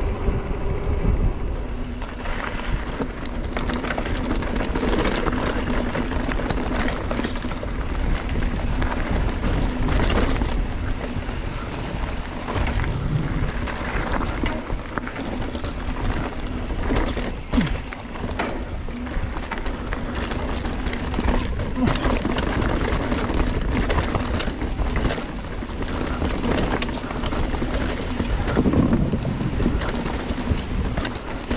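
Full-suspension mountain bike ridden fast down a rocky dirt singletrack, heard from a camera mounted on the rider: a steady rush of tyre and wind noise with frequent rattles and knocks from the bike over rocks and roots.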